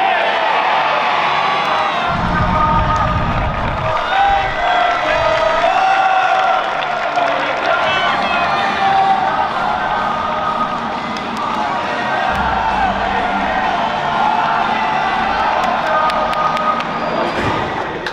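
Football stadium crowd cheering and chanting together, many voices singing and shouting at once.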